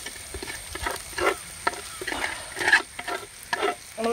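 A steel ladle scraping and stirring beef pieces frying in a black iron wok, in repeated strokes about two a second, over the sizzle of the frying meat.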